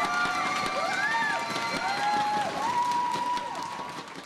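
Theatre audience cheering, with whoops and whistles rising out of the crowd noise. It fades out near the end.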